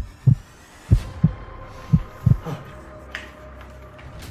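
Heartbeat sound effect: three double thumps, lub-dub, about one a second.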